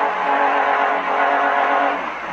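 A steady, held pitched tone with even overtones, coming from the TikTok clip being played and easing off near the end.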